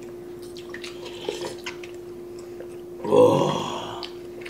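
Close-up eating sounds: light clicks of a spoon and fork against bowls and wet mouth sounds over a steady low hum. About three seconds in there is a short, louder throat sound.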